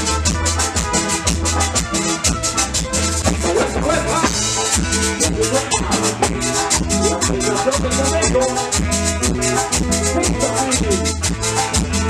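Live band playing a chilena: keyboard and electric guitar melody over a steady bass, with a metal güiro scraping a continuous rhythm.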